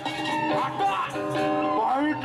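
Balinese gong kebyar gamelan playing, a children's ensemble, with held ringing tones and a gliding melodic line near the end.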